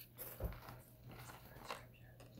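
Faint room tone: a low steady hum, with a soft bump about half a second in and a small click near the end.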